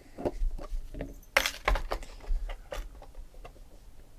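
Small metal briefcase keys being handled: a run of light clicks and knocks, with a brief bright jingle about a second and a half in.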